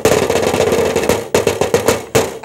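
A loud, dense run of rapid percussive hits like a drum roll, with a short break about 1.3 seconds in.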